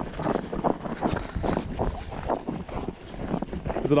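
Footsteps hurrying over snow-covered lake ice, several steps a second, with wind on the microphone.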